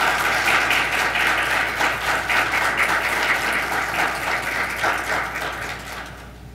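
An audience applauding, many hands clapping at once, fading out near the end.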